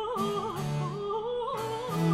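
French Baroque petit motet: a high treble voice sings a wavering line with vibrato over a slow-moving continuo bass of bass viol and keyboard.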